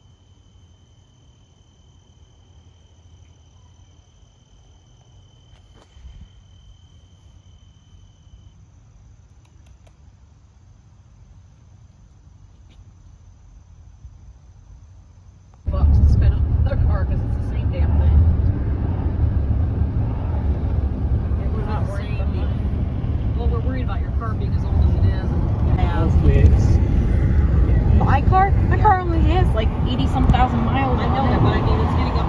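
Insects trilling in two steady high tones against a quiet background. About halfway through, this cuts abruptly to loud road noise and a low rumble heard from inside a moving car on a highway.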